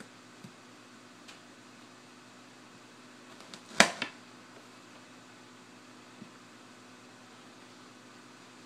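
A single sharp knock about four seconds in, with a smaller one right after, as something is struck or set down on a kitchen counter during food preparation; a few faint clicks and a steady low hum lie under it.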